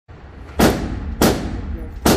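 Two gunshots at an indoor range, about half a second apart, each followed by a short echo off the walls.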